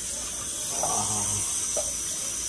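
A steady high hiss, with a brief low murmur or hum about a second in.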